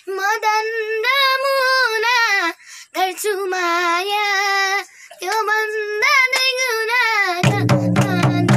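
A boy singing a song in Nepali unaccompanied, three long phrases with held, wavering notes. Near the end, instrumental music with a beat comes in, with hand claps.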